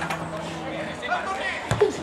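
Voices calling out across a football pitch, with one sharp thump of a football being kicked near the end.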